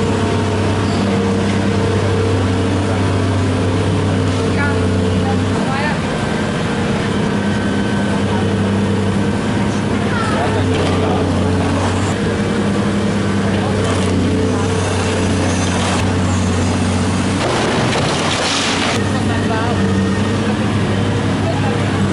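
Demolition excavator's diesel engine running steadily as it works its grapple, its hum dropping away twice for a second or two. A brief rushing noise comes about eighteen seconds in, with voices in the background.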